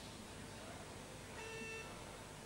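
Faint, hushed sports-hall ambience. About a second and a half in, a short pitched tone like a beep or horn sounds for about half a second.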